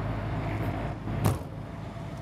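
A steady low hum from the motorhome's running 8,000-watt diesel generator, with one sharp click a little past halfway as a metal exterior storage-bay door is pushed shut and latches.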